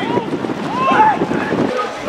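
Several voices of spectators and players shouting and calling across a football pitch, over steady wind noise on the microphone. The background noise drops away abruptly near the end.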